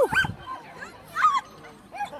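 A dog giving short, high yips: a quick cluster right at the start and a couple more just over a second in.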